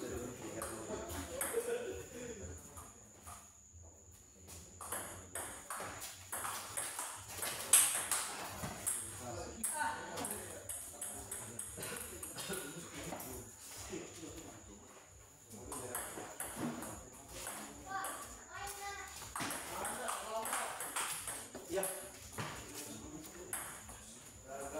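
Table tennis ball being played in rallies: light, sharp clicks as it is struck by paddles and bounces on the table, with one louder knock about eight seconds in. Voices talk in the background.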